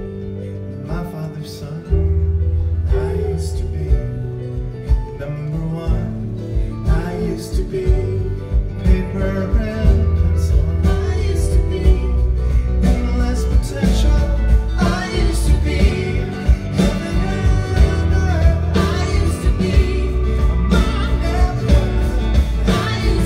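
Live band playing a song on mandolin, violin and piano, with singing at times. About two seconds in the full band comes in, louder and with heavy low end.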